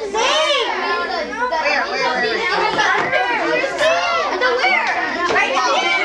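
A group of young children chattering over one another, their high voices overlapping without a pause.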